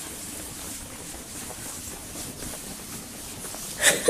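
Footsteps on a hard tiled corridor floor over a steady hiss of background noise, with a sharp, loud noise near the end.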